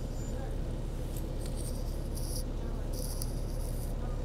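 City bus engine running, heard from inside the passenger cabin as a steady low rumble. Two short hisses come through about two seconds in and again near the end.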